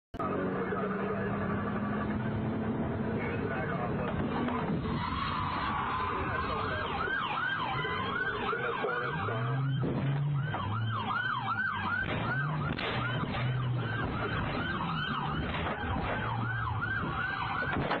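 Police car siren in a fast yelp, rising and falling about three times a second from about five seconds in, over a steady engine and road hum.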